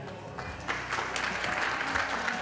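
Audience applause breaking out about two-thirds of a second in and building, over background music.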